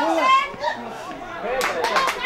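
Several voices shouting and calling over each other across an outdoor football pitch during play.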